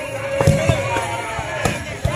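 Firecrackers bursting in a few sharp bangs, heard over music and voices.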